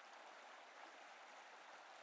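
Near silence: a faint, steady hiss of flowing river water.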